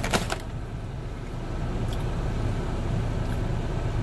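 Steady low rumble of an idling truck engine heard inside the cab, with a short burst of noise at the very start.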